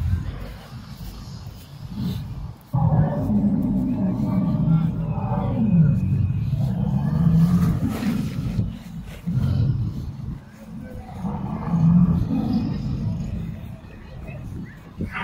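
Recorded dinosaur roars and growls played over an exhibit's loudspeakers. They start suddenly about three seconds in and run as long, low bouts with short breaks.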